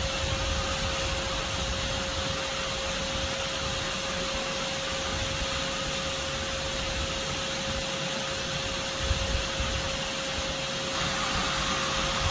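Vacuum running steadily with a constant whine, its hose nozzle held at the entrance hole of an underground yellow jacket nest to suck up returning foragers.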